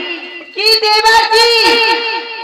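A stage performer's high voice singing a drawn-out line through a microphone and PA, starting about half a second in after a short pause.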